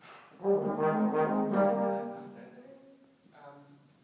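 Brass ensemble of tuba and trombones playing a loud, full chordal passage that holds for about a second and a half and then dies away.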